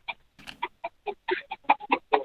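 A person's stifled laughter: a quick run of short, breathy giggles.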